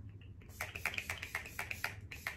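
ColourPop Pretty Fresh setting spray pump-misted onto the face in a rapid series of short spritzes, several a second, starting about half a second in.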